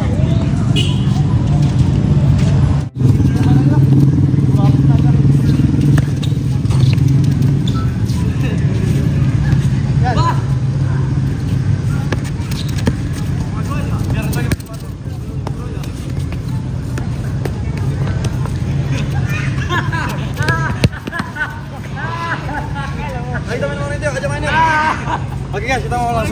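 Sounds of an outdoor futsal game: players calling out and a few sharp ball kicks over a steady low rumble, with the voices busier near the end.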